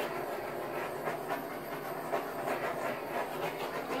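Small handheld butane torch hissing steadily as its flame is passed over wet acrylic pour paint to pop the air bubbles.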